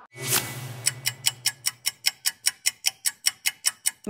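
Stopwatch ticking sound effect: a whoosh, then fast, even clock ticks at about six a second.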